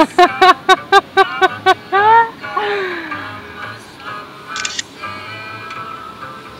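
Loud, high-pitched laughter: a quick run of ha-ha bursts for about two seconds, ending in a rising then falling whoop, then dying down to quieter chuckling.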